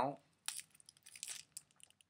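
Crinkling and rustling of a mint wrapper as a mint is taken out, in a couple of short bursts with small clicks.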